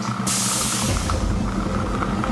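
Air-mix lottery ball machine: a sudden loud hiss of air as the draw is made and a ball is blown up into the draw tube, fading within about a second into a low rumble, under a held tension music drone.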